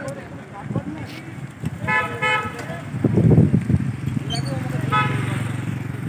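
A road vehicle's horn gives two short beeps about two seconds in and one more about five seconds in. Under it a motor vehicle's engine runs steadily from about three seconds on, loudest just after three seconds.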